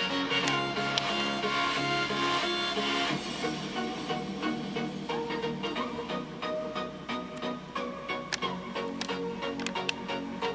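Background music of held instrumental notes changing from one chord to the next.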